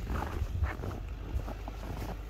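Footsteps crunching on packed snow, a few irregular soft steps, over a steady low rumble of wind on the microphone.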